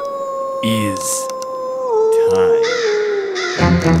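Spooky sound effect of a wolf howling one long, nearly level note that steps down in pitch about two seconds in and fades, with crows cawing over it.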